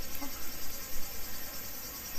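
Insects chirring steadily and high-pitched, the usual summer daytime chorus, over a low, uneven rumble.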